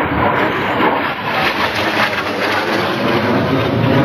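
A steady, loud rushing roar of a jet aircraft passing overhead.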